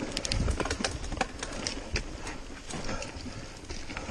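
Mountain bike clattering over rocky singletrack: irregular sharp knocks and clicks from tyres, chain and frame striking rocks, over a low rumble.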